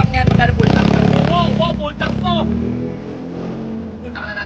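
Voices talking over a vehicle engine idling with a steady low hum, which fades slowly in the second half.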